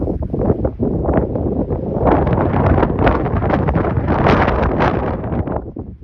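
Wind buffeting the microphone in loud, gusty rumbling bursts that die away near the end.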